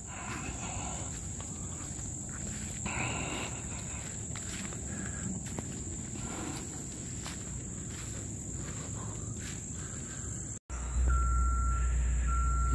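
Insects shrilling in one steady high-pitched tone, over the rustle of leaves and brush being pushed through. Near the end the sound drops out for an instant, then a low engine rumble and a vehicle's reversing beeps start.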